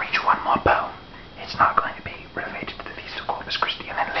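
A man whispering, reading poetry aloud.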